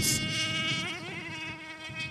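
High-pitched motor whine of a fast RC speed-run car passing by; the pitch drops about a second in as it goes past, then the whine fades away.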